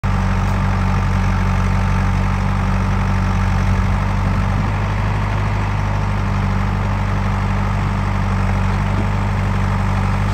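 Diesel engines of a farm tractor and a JCB 3DX backhoe loader idling steadily with a deep, even hum.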